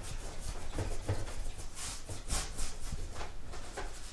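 A paintbrush scrubbing oil paint onto a canvas in quick, repeated rubbing strokes, about two a second.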